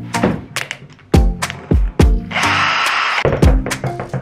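Background music with a steady drum beat, with about a second of hiss a little past halfway through.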